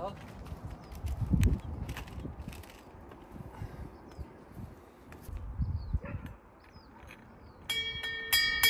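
Footsteps and a few dull thumps, then near the end a wall-mounted brass door bell rung by hand, ringing out with a clear pitched tone.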